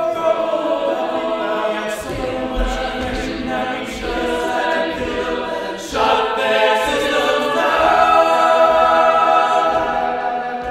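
A group of voices singing together in held notes, with little or no backing, growing louder about six seconds in.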